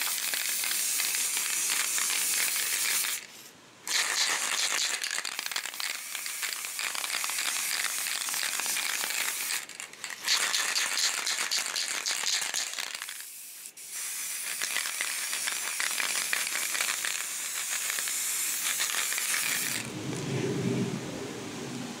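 Aerosol spray can of grey primer hissing in long sprays, with three short breaks, stopping near the end; the can is nearly empty.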